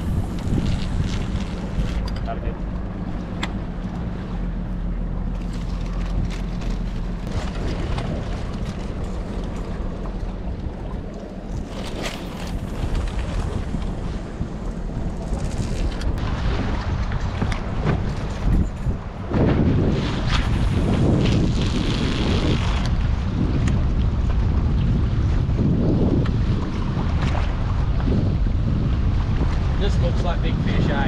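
A boat's motor running, with wind buffeting the microphone and water noise around the hull. The rumble and wind get louder about two-thirds of the way through.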